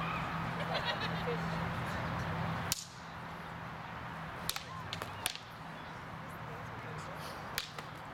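Practice longswords striking together in sparring: a handful of sharp, ringing clacks, the loudest about three seconds in and the others spread through the rest.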